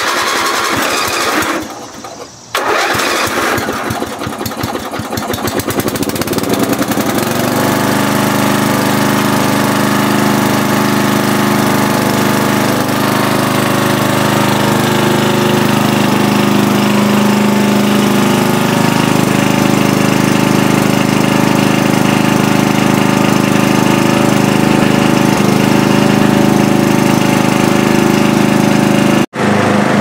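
Briggs & Stratton 11 HP lawn-tractor engine being started: it turns over, catches about two and a half seconds in, runs unevenly for a few seconds, then settles into a steady run, with its pitch rising for a moment about halfway through. It is starting and running after a field repair of the engine.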